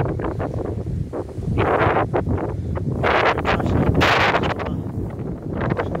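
Wind buffeting the microphone in a low, steady rumble, with several bursts of rustling in tall grass, the loudest around the middle.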